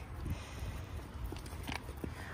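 White-tailed deer eating apple slices and nuts from a metal bowl: a few faint chewing clicks over a low, steady rumble.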